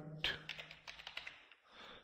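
Computer keyboard keys clicking as a short word is typed: a quick run of about half a dozen keystrokes in the first second and a half.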